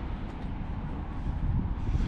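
Steady low rumble of motorway traffic.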